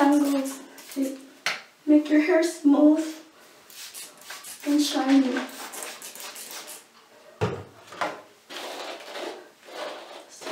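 A plastic trigger spray bottle spritzing detangler onto hair, with hair and bottle handling noise and short bits of a woman's voice. About seven and a half seconds in, a low thump as the bottle is set down on the counter.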